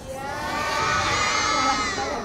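A large group of children shouting together in reply to being asked if they are ready to perform: one drawn-out shout of many voices that swells a little, then fades near the end.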